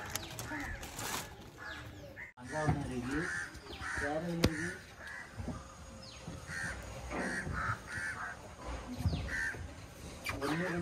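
Crows cawing repeatedly in short, harsh calls, with a sharp knock about four and a half seconds in.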